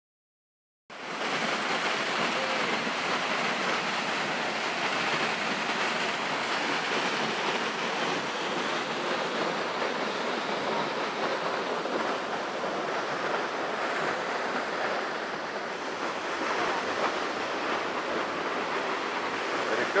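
Waterfall and creek rushing steadily below a suspension bridge, a constant even wash of water noise that starts abruptly about a second in.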